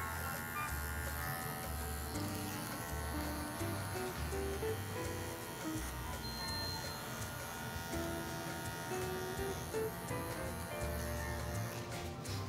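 Electric hair clipper buzzing steadily as it cuts up the back of the neck, over background music with a rhythmic bass line.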